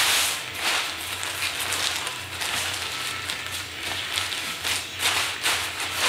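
Fabric of a kite wing rustling and crinkling in irregular surges as it is folded and smoothed flat by hand on a table.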